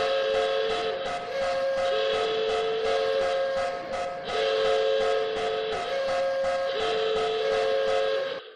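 Train whistle sounding in long held chords that shift back and forth between two pitches, over a steady rapid clicking of about four strokes a second, like wheels running on rail joints.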